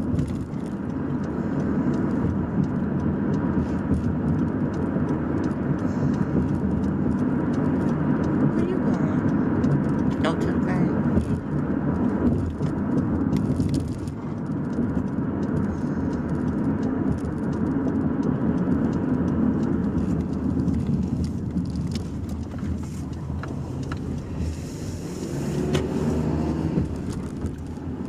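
Steady road and engine noise inside a moving car's cabin, a low rumble with no sudden events.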